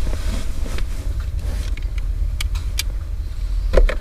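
Pickup truck engine idling, a steady low rumble heard from inside the cab with the window open. A few light clicks come a little past halfway, and a louder thump near the end.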